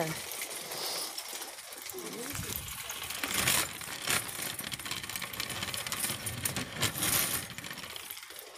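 Wire shopping cart being pushed along a store aisle, its wheels and basket rattling continuously, louder around the middle and near the end.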